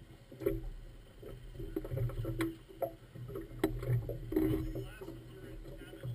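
Boat engine idling with a steady low hum, with several sharp knocks and clunks over it.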